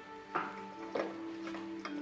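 Quiet background score: held tones under soft, plucked or struck notes that come about every half second, like a ticking clock.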